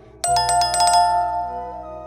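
Notification-bell chime sound effect: a bright jingling ring of several quick strikes starting about a quarter second in, then ringing away over a second or so, over background music.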